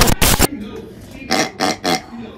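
A loud burst of edited-in sound effects for an animated title card in the first half second, then a man's short, breathy vocal bursts, three in quick succession near the end, like laughing.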